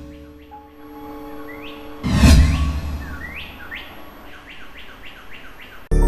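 Sound design of a TV news ident: a held synth tone with a deep impact hit about two seconds in that rings away, and a run of short rising bird-like chirps, about four a second near the end. Loud music cuts in right at the end.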